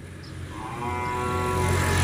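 A young Simmental bull moos once, a steady call of about a second beginning half a second in. Under it a motor vehicle's engine hum grows steadily louder.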